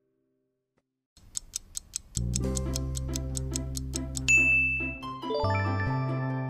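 Quiz countdown sound effects. After a short silence a timer ticks fast, about five ticks a second, and a music track with a steady bass joins in about two seconds in. A little after four seconds a bell-like ding rings out, signalling that time is up, and the music runs on.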